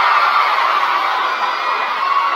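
Concert audience of fans screaming and cheering in answer to a question from the stage, a steady high-pitched wall of voices.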